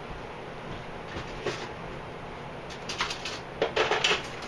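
A few sharp knocks and clinks as a fork is fetched from a kitchen drawer: one faint click about a second and a half in, then a quick cluster near the end.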